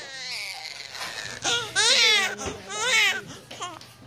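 Newborn baby crying: a fading wail at the start, then two loud, wavering wails in the second half.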